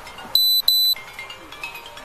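Two short, loud, high-pitched electronic beeps in quick succession, typical of an Axon Body 2 body camera's recording-reminder tone, followed by faint scattered short tones.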